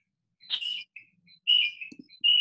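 A young girl's short, high-pitched squeals in the background, several in a row.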